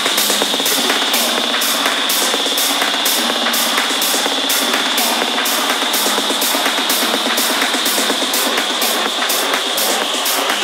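Tech-house DJ mix running through a changeover between tracks. A steady high percussion pattern of about two hits a second plays over a held high synth tone, with no deep bass or kick underneath.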